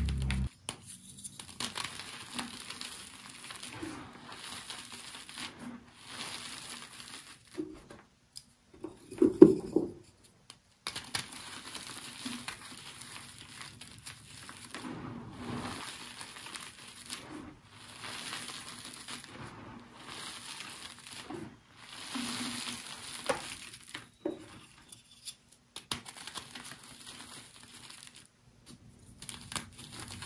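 Crinkling and crumpling of a crinkly material handled close to the microphone for ASMR. It comes in stretches broken by short pauses, with one louder thud about nine and a half seconds in.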